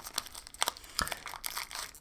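Plastic candy wrapper of a king-size Reese's cup crinkling as it is handled and opened. It makes a scatter of small crackles, with sharper ticks about halfway through and about a second in.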